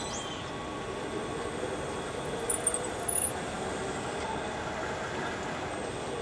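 A turned wooden piece being worked off a lathe jig: a brief, louder squeaking scrape about two and a half seconds in, lasting about a second, over a steady background hum.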